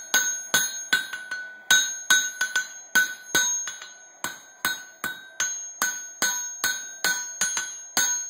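Hand hammer forging red-hot coil-spring steel on an anvil: a steady rhythm of about two to three blows a second, each with a bright ringing tone from the anvil.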